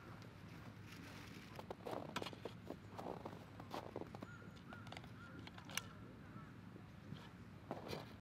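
Quiet outdoor ambience: scattered soft crunches and clicks of footsteps on snowy, leaf-strewn ground, with a faint distant call about halfway through.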